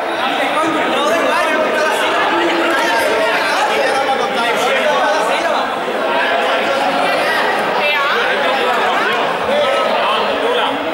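A group of young men and women chattering at once, many overlapping voices with no one speaker standing out, in a large sports hall.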